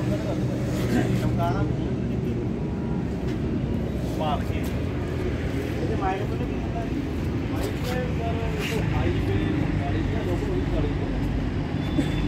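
Indistinct background voices over a steady low mechanical hum, with short bursts of speech now and then.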